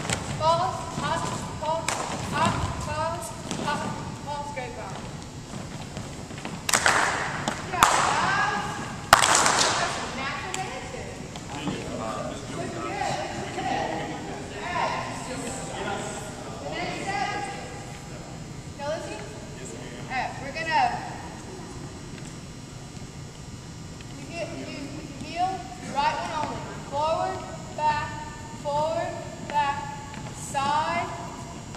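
Several people's voices calling out and talking in a large gymnasium, with three loud thuds between about seven and nine seconds in.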